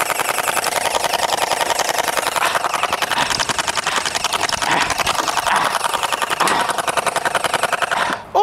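Splatrball electric gel blaster firing on full auto: a rapid, even rattle of about ten shots a second, held for several seconds.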